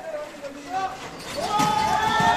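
Men's voices talking and calling out; about a second in, a long drawn-out call with a slowly falling pitch begins and carries on over other voices.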